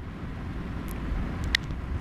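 Low, steady rumbling background noise with no speech, with two faint short clicks, one near the middle and one about a second and a half in.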